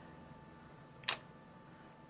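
Nikon D300 DSLR shutter firing once, a single short click about halfway through, as a frame is taken.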